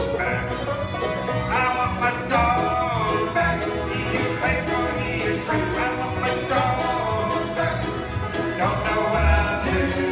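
Bluegrass band playing an instrumental break on upright bass, acoustic guitar, mandolin, banjo and fiddle, with a sliding lead melody over a steady bass pulse.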